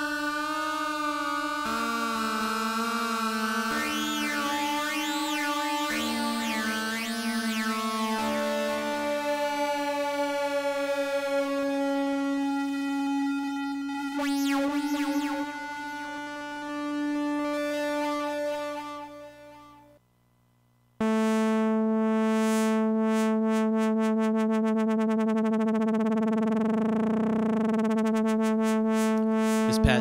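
Camel Audio Alchemy software synthesizer playing held notes that step up and down in pitch while a resonant filter cutoff is swept back and forth. The sound fades out about two-thirds of the way in. After a second of silence a new held note starts with a pulsing LFO wobble on its filter that speeds up.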